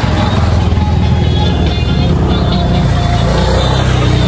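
A motorcycle engine running steadily close by, a continuous low rumble, with music playing at the same time.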